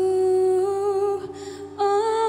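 A woman singing a long held note into a microphone over soft, steady instrumental accompaniment, then, after a short break, a new, slightly higher note near the end.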